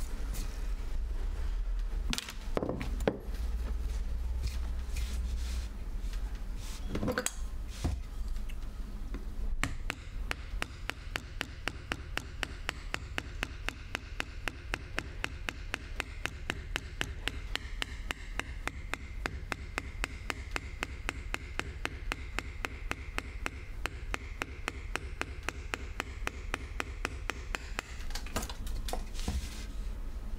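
Carving chisel clearing waste wood from a woodblock: a few scattered knocks, then from about a third of the way in a fast, even run of sharp taps, about five a second, that stops near the end.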